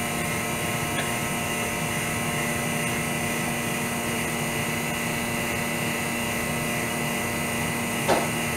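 Vacuum pump running steadily with an even hum and hiss, pulling air out of the PVA bags over a prosthetic socket during resin lamination.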